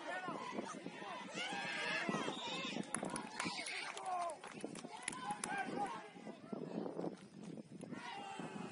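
Sideline voices of football players and coaches talking and calling out, overlapping and indistinct, with a few sharp knocks in the middle.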